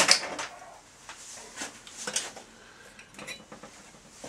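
Metal tools and parts clinking and knocking on a workshop bench as they are handled: a sharp clink right at the start, then several lighter, separate knocks spread through the rest.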